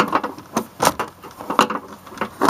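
Black plastic air filter housing being worked loose and lifted out of the engine bay: a handful of sharp, irregularly spaced plastic clicks and knocks.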